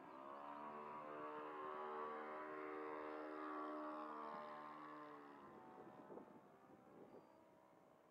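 Four-stroke engine of a radio-controlled Stick model airplane flying past overhead, running at a steady pitch. It grows louder over the first second or two, then fades with a slight drop in pitch after about five seconds.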